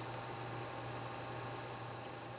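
A steady low hum under a faint even hiss: quiet background tone with no other events.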